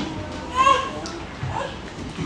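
A young child's voice: a short, high-pitched squeal about half a second in, with a few fainter vocal sounds after it.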